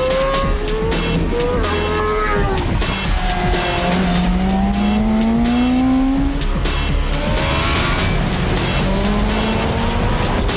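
BMW M1000RR four-cylinder superbike engine revving at high speed, its note rising repeatedly as it accelerates, over background music with a steady beat.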